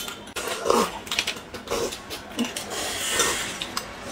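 Close-miked eating: chewing dumplings and slurping soup from spoons, in short irregular bursts with small clicks, and a longer slurp about three seconds in.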